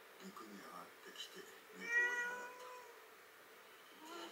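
A domestic cat gives one drawn-out meow about two seconds in, lasting about a second; it is the loudest sound here. Soft, low, voice-like murmurs come before it.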